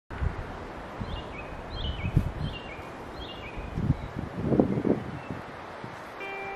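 Wind rumbling on the microphone, swelling in gusts about two seconds in and again near the end. Over it a bird sings a short falling phrase of a few notes, four times in the first few seconds.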